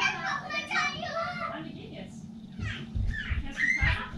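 Children's voices talking and calling out, high-pitched and lively. Low rumbling thumps come in during the second half.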